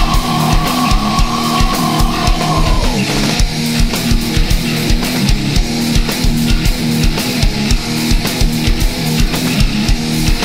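Nu metal with heavily distorted electric guitars over a drum kit. A high held note slides down in pitch about three seconds in, leaving a low riff pounding on with the drums.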